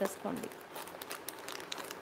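Clear plastic jewellery pouches crinkling as they are handled: an irregular run of small, sharp crackles.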